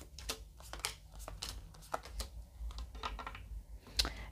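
Tarot cards being drawn from the deck and laid down on a table: a quick, irregular series of light clicks and slaps.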